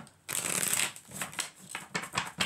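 A deck of tarot cards being shuffled: a dense rustle of cards for about half a second, then a run of quick card flicks and taps.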